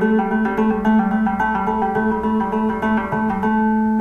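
Gretsch hollow-body electric guitar playing a trill on the D string: the fifth fret picked once, then rapid, evenly spaced hammer-ons and pull-offs to the seventh fret, the two notes alternating steadily.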